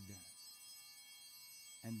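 Low-level pause filled by a faint, steady, high-pitched whine made of several unchanging pure tones. A man's voice trails off at the start and resumes near the end.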